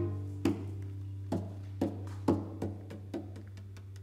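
A series of sharp wooden taps played as percussion in a live chamber piece for shakuhachi, violin and cello: about eight single knocks, each with a short ring, at uneven spacing and growing fainter toward the end.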